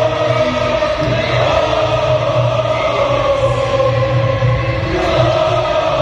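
A large crowd of football supporters singing a chant together in unison, loud and continuous.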